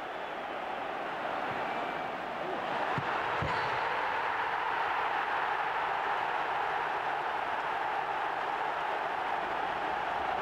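Football stadium crowd noise, a steady roar from the terraces that swells a little about three seconds in.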